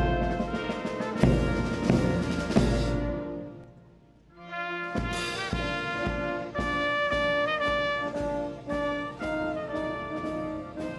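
Brass music with trumpets and trombones playing sustained, held notes. One passage fades out about four seconds in, and a new phrase starts about a second later.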